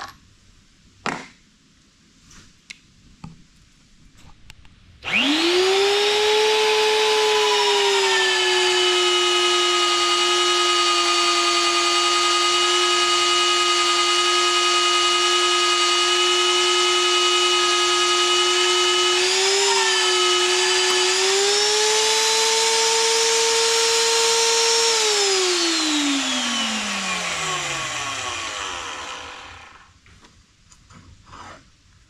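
A VEVOR magnetic drill's electric motor, after a few light clicks from handling, spins up to a steady high whine. Its speed sags a little and holds while the bit cuts under load, picks up again about two-thirds of the way through as the load comes off, then it is switched off and the whine falls away as it winds down over several seconds.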